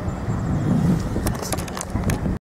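Steady low rumble of road traffic, with a run of clicks and rustles in the second half as the phone rubs against clothing.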